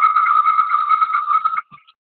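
Steady high-pitched whistle of audio feedback from an open microphone on a video call, a single held tone that cuts off suddenly about one and a half seconds in.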